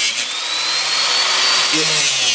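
A hand-held power tool's abrasive cut-off wheel grinding through a steel motorcycle drive chain, throwing sparks: a steady hissing grind with a high whine that climbs in pitch and drops away near the end.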